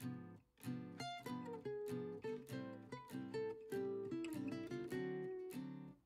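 Background music: an acoustic guitar playing a light run of plucked notes and strummed chords.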